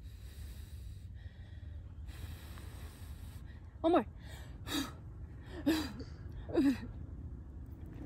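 A person blowing hard on a dandelion seed head: several long breathy puffs of air, then four short voiced exhalations about a second apart, each falling in pitch.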